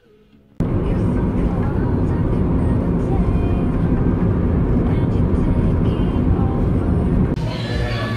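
Loud, steady rumble of road and wind noise from a moving car, starting abruptly about half a second in. It gives way near the end to restaurant chatter with music.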